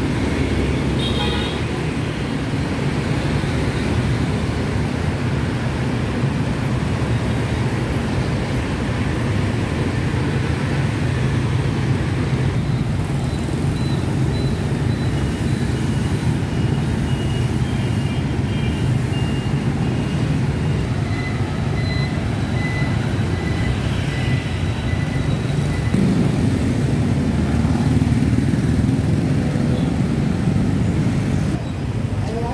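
Busy street traffic, mostly motorbikes with some cars, making a steady roar of engines. A brief high tone sounds about a second in, and faint short high beeps come and go through the middle.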